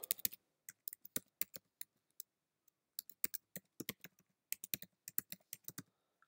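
Keystrokes on a computer keyboard: a web address being typed in two quick runs of clicks, with a short pause a little over two seconds in.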